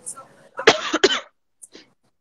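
A woman coughing, two loud coughs in quick succession about half a second in.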